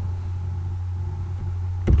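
Steady low background hum at an even level, with no other events; speech starts right at the end.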